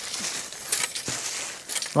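Plastic packaging rustling and crinkling as a chain-link fly curtain is unwrapped and handled, with a few sharp clicks of the chain links knocking together.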